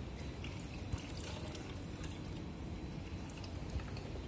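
Aquarium water running steadily from a siphon hose into a plastic bucket, with a few faint drips, as the tank is drained to lift out scrubbed-off algae.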